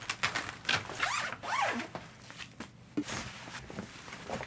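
Zipper on a cajon's carrying case being pulled open in a few quick rasping strokes, followed by handling of the case and a soft bump about three seconds in.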